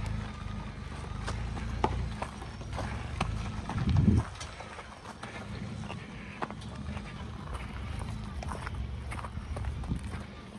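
Pickup truck engine running low as the truck rolls slowly over a rocky dirt track, with loose stones crunching and popping under the tyres. There is one louder low thump about four seconds in.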